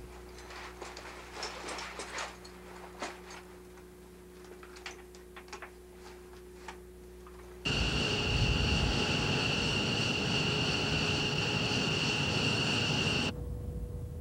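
Faint clicks and rustling of flight gear being handled over a low room hum; about eight seconds in, a sudden change to loud, steady jet-engine noise on an F-15 flight line with a high whine, which cuts off abruptly near the end and gives way to a quieter steady drone.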